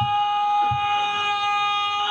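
A steady high-pitched tone with overtones, holding one unchanging pitch throughout, over faint crowd voices.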